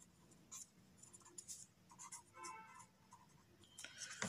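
Faint scratching of a pen writing on paper in short strokes.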